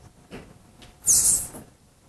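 A short, loud hiss lasting about half a second, starting about a second in, with a few fainter soft noises before it over quiet room sound.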